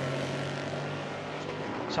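Race car engine running at a steady pitch, a constant drone over track noise.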